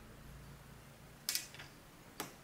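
Faint room tone with one short, sharp handling click or rustle a little past the middle, followed by a weaker one.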